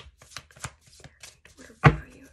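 Tarot deck being shuffled overhand by hand: a run of soft card slaps, about three a second, then one loud knock near the end as the deck is knocked upright on the table to square it.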